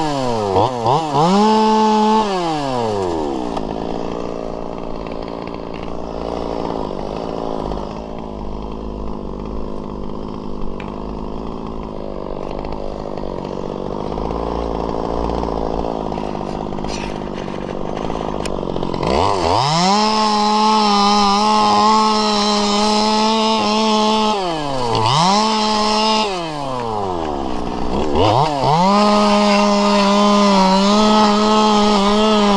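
Two-stroke chainsaw revving up and down, then dropping to idle for about fifteen seconds before going back to high revs, with two brief dips in revs near the end.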